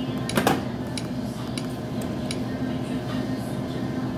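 Steady low hum of a shop interior with several light clicks and knocks in the first couple of seconds, the loudest about half a second in.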